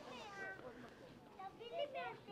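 Faint voices of passers-by in a crowd, with one high-pitched, drawn-out falling voice near the start and more chatter near the end.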